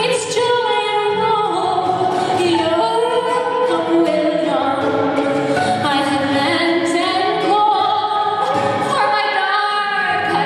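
A woman singing a traditional English folk song, accompanied by violin and acoustic guitar.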